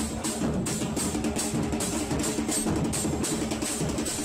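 Large bass drums (bombos) of a football supporters' group beating a steady rhythm, with a crowd of fans singing along.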